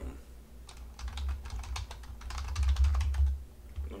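Typing on a computer keyboard: a fast, uneven run of keystrokes that starts just under a second in and stops near the end, over a low rumble.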